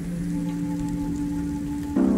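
Steady rain hiss, a recorded rain effect, mixed under slow ambient music of long held chords.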